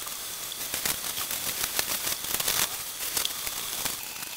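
Shower running: water spraying down and pattering on a shower tray and a person's legs, a steady hiss with many small splashes.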